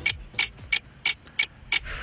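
Ticking clock sound effect marking a 60-second countdown on air, sharp even ticks at about three a second.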